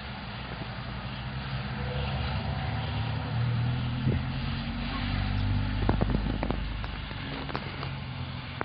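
A motor vehicle's engine hum that swells in the middle and fades toward the end, with a few sharp clicks about six seconds in.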